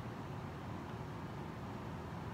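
Steady background noise with a low rumble: room tone, even and unbroken, with no distinct sounds in it.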